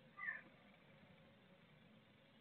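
Blue tit in a nest box giving one short, soft call a moment in, over faint steady background hiss.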